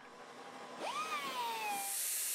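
Angle grinder on steel: its whine rises quickly about a second in, then slowly drops in pitch as the disc loads up, with a high grinding hiss joining near the end.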